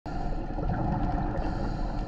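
Underwater ambience picked up by a diver's camera: a steady, muffled low rumble with faint steady tones.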